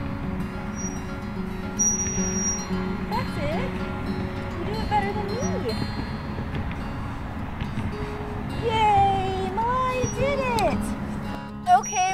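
Soft background music with steady held notes, over a toddler's short wordless squeals and vocal sounds, with a longer one about two seconds before the end.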